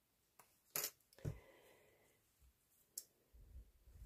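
Quiet handling sounds on a craft table: a few sharp little clicks about a second in, typical of a small metal bulldog clip being pinched and clipped onto a ribboned card tag, then light rustling and a soft knock as card tags and a plastic glue bottle are moved.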